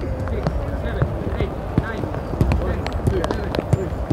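Footballs being kicked and struck on a grass training pitch, several sharp thuds scattered through, over players' untranscribed chatter and calls.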